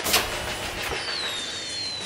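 Animated sound effect of an aircraft's underside hatch opening: a sudden hissing rush, then steady rushing noise with a faint, thin falling whistle in the second half as vials drop out.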